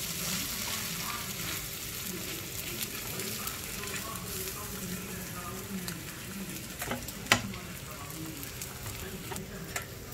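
Beaten eggs sizzling steadily as an omelette fries in oil in a frying pan, with a sharp click about seven seconds in.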